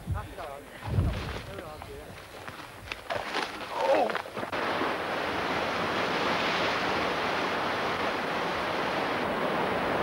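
Sea surf breaking on a rocky shore: a steady rush of waves that comes in abruptly about halfway through. Before it there are a few brief voice fragments and a single low thump.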